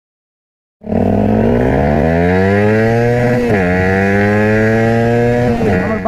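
Motorcycle engine accelerating hard, its pitch climbing, dropping suddenly at a gear change about two and a half seconds after it starts, climbing again, then falling near the end.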